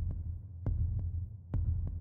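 A low, heartbeat-style bass pulse from an electronic suspense music bed. There is a deep thud about every second, each paired with a lighter click.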